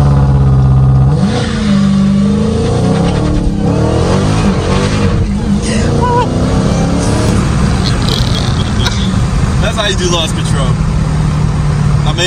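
Supercharged V8 of a Dodge Challenger SRT Hellcat Redeye, heard from inside the cabin, held at a steady raised rpm on launch control. About a second in the car launches and the revs rise and fall as it accelerates hard through the gears, with enough power to break traction, then settle to a steadier run.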